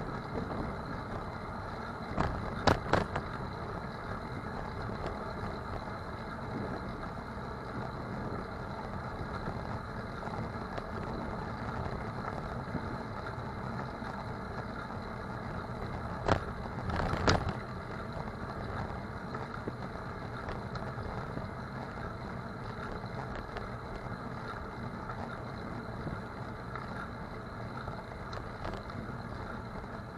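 Steady rolling noise of a bicycle ridden along city streets, with two short bursts of sharp rattling knocks, the first about two to three seconds in and the second about sixteen to seventeen seconds in.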